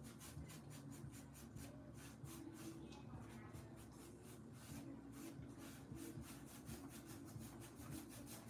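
Faint, quick scratchy strokes of a fine-tipped drawing tool on sketchbook paper, several a second, over a low steady room hum.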